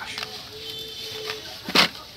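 Hot Wheels blister-card packages being handled and shuffled in a cardboard box, with small clicks and one sharp clack near the end. A faint steady tone hums underneath for about a second.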